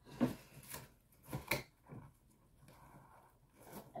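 Rummaging through belongings: a few short rustles and knocks of things being handled in the first second and a half, then fainter rustling.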